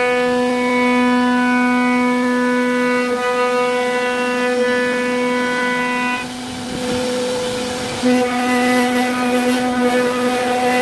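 MDH1325 CNC wood router's spindle whining steadily as the bit mills a groove into a wooden door panel. About six seconds in the whine softens and loses its upper ring. It comes back abruptly and louder about two seconds later, as the bit starts cutting a new groove.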